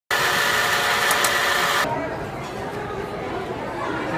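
A loud, steady hiss with several steady whistling tones in it, cut off suddenly just under two seconds in, followed by crowd chatter and voices.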